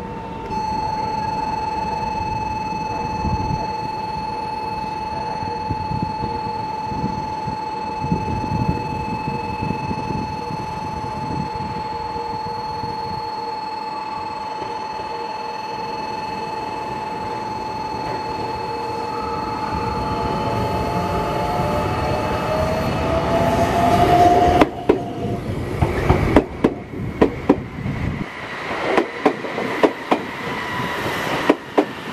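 Meitetsu 1700 series electric train creeping out of a siding over curved points. A steady high whine runs through most of it, a whine rises in pitch about two-thirds through, and the wheels knock over the rail joints and points in the last several seconds as the cars pass close by.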